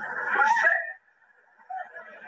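A man's voice on a 1994 archived speech recording, thin and muffled, heard for about a second before a short pause, then resuming near the end.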